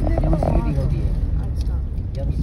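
Steady low road and engine rumble of a moving car, heard from inside the cabin, with a person's voice over it in the first second.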